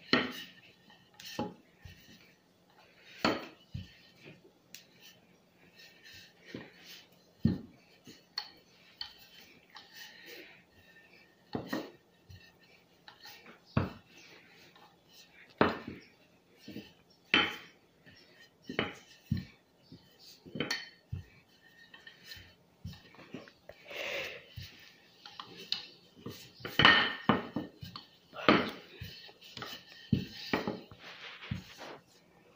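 Wooden rolling pin rolling dough on a tiled countertop: irregular knocks and clinks as the pin taps and bumps the hard tile, roughly one every second or two, busier and louder near the end.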